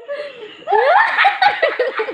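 People laughing in rapid bursts, starting about two-thirds of a second in.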